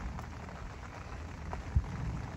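Steady rain pattering, with one short low thump near the end.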